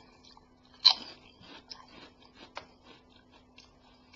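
A puffed prawn cracker bitten with one sharp crunch a little under a second in, then chewed with a run of small, crisp crunches.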